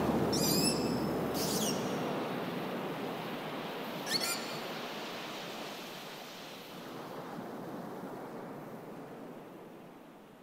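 Recorded sea sound: a steady wash of surf fading slowly out, with three short, high, rippling chirp calls, about half a second in, around one and a half seconds in and about four seconds in.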